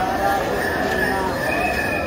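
Voices of a crowd of people talking over one another. A high, held tone comes in over them for the last half second.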